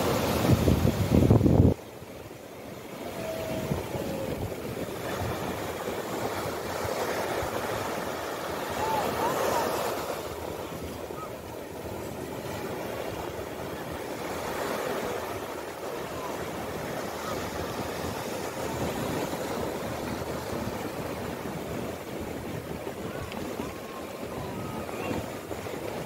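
Ocean surf washing up the sand: a steady rushing that swells and eases as each wave runs in and draws back. In the first second and a half a louder, rougher rush cuts off suddenly.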